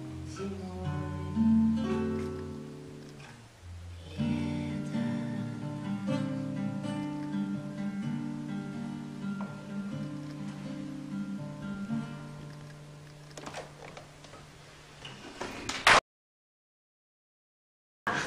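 Nylon-string classical guitar fingerpicked in an instrumental passage of single plucked notes and chords, with a short lull about three and a half seconds in. The playing thins out, then a sharp loud burst comes about two seconds before the end and the sound cuts off completely.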